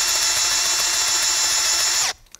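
Makita cordless drill running steadily at full speed, boring a long self-feed auger bit into a living tree trunk, with a constant motor whine; the bit's self-feed tip pulls it into the wood.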